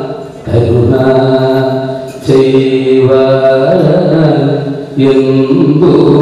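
A man chanting Sanskrit verses in a slow, melodic recitation with long held notes, in phrases broken by short breaths about two and five seconds in.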